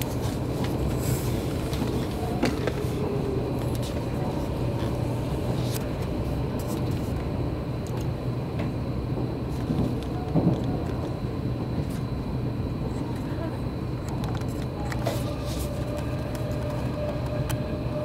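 Running noise inside an Odakyu limited express train on the move: a steady rumble of wheels on rail, with a few sharp clicks spread through it.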